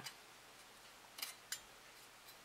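Small nippers snipping the tabs that hold a part in a thin photoetched metal sheet: two short, sharp clicks about a second in, a fraction of a second apart.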